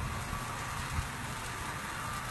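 Ribs sizzling on a grill grate: a steady hiss of fat and juices spitting over the heat.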